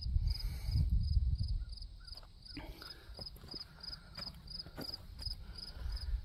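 A cricket chirping steadily in a high, even rhythm of about three chirps a second. A low rumble on the microphone sits underneath, strongest in the first second or two.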